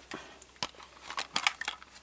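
A few light clicks and taps of a plastic toy helicopter being handled and turned in the hands.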